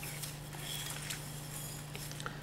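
Faint scraping and light ticks of a silicone spatula rolling a dough ball through sesame seeds in a ceramic bowl, over a steady low hum.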